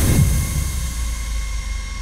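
Trailer sound design: a deep booming hit with a falling bass drop right at the start, then a low held rumble under a faint, steady high tone.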